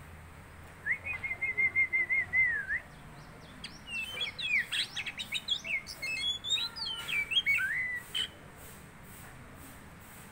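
Oriental magpie-robin singing: a quick run of repeated notes at one pitch for about two seconds, then, after a short pause, a varied phrase of rapid whistled slides and chirps that stops about two seconds before the end.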